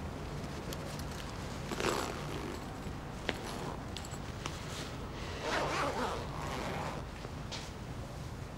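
Zipper of a black fabric bag being pulled open in two short runs, about two seconds in and again near six seconds, with a single sharp click in between, over a low steady hum.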